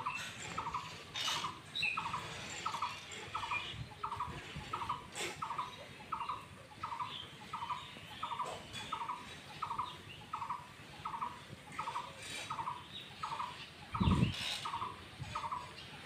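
A bird repeating one short, high note in a steady, even series about twice a second. A dull thump sounds about two seconds before the end.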